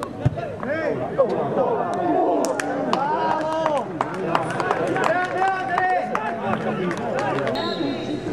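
Several men shouting and calling over one another on a football pitch, some calls drawn out, with a few sharp knocks among them.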